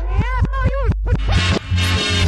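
A pop song played backwards: a reversed female vocal line gliding up and down over reversed drum hits and bass, with a short gap in the voice about halfway through.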